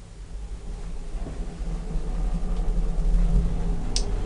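Hydraulic elevator car setting off downward: a low rumble and hum from the hydraulic drive, growing steadily louder, with a brief click near the end.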